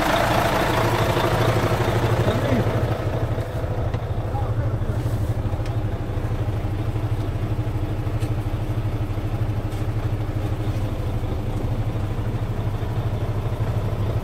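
Mercedes Actros 3236 K truck's V6 diesel idling steadily with an even, low drone.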